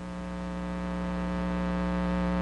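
Electrical mains hum in the audio: a steady buzz with many evenly spaced overtones, growing slowly louder.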